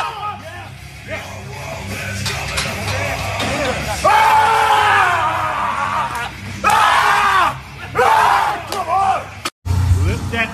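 Men yelling, with several long, loud cries about 4, 6.5 and 8 seconds in, at a heavy barbell squat, over background music with a steady bass. The sound drops out briefly near the end.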